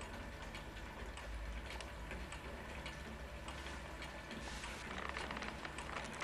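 Faint room noise with a low hum and light, irregular ticking, a little louder near the end.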